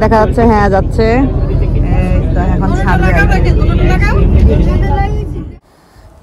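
People talking over the steady low rumble of a moving tour boat's engine. Both stop abruptly about five and a half seconds in.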